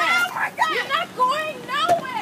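High-pitched voices, several at once, whose words can't be made out, with a sharp click just before the end.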